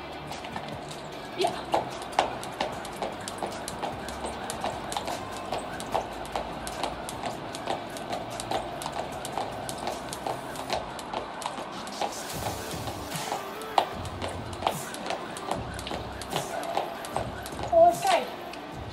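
Jump rope skipping on a tiled floor: the rope slaps the tiles and the feet land in a steady rhythm of about two to three ticks a second, starting about a second and a half in and stopping near the end.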